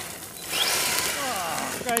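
Arrma Senton 3S BLX RC truck's brushless motor whining as it accelerates off over gravel, tyres scrabbling on the loose stones; the whine falls in pitch through the second half as the truck pulls away.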